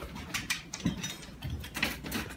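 A pizza being cut with a pizza cutter on its pan: a scatter of light clicks and scrapes as the blade goes through the crust and hits the pan.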